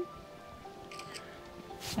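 Quiet background music with a few long held tones, under a pause in the narration; a voice starts again at the very end.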